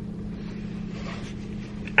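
BMW car engine idling, a steady low hum heard from inside the cabin.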